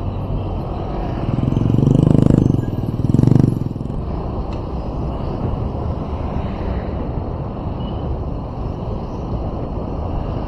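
Steady engine and road rumble from driving in traffic. It rises into two louder swells of revving engine, one about one and a half seconds in and a shorter one just after three seconds, then settles back.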